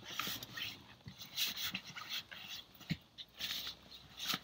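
A dog whimpering in several short, soft sounds, with no speech over it.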